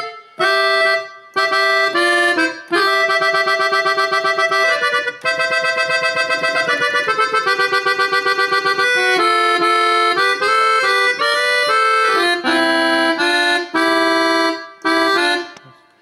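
Sampled Gabbanelli button accordion on its clarinet register, played from a Korg keyboard: accordion melody in phrases of held two-note chords and quicker runs, with short breaks between phrases.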